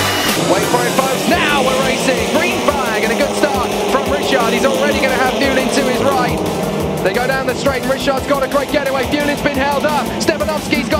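A pack of touring cars accelerating away from a race start, many engines revving up and dropping back at gear changes.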